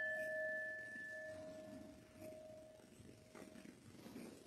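A small altar bell (sanctus bell) rung once at the elevation of the cup, ringing out and slowly fading. Its higher tone dies away within about two seconds, while the lower one lingers for more than three.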